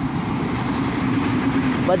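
Train going by, a steady rumble with a held low drone.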